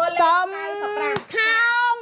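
A woman's voice speaking in long, drawn-out, sing-song syllables, with one sharp click just over a second in.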